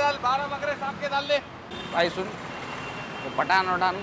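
Men's voices talking in bursts over a steady background of street traffic noise.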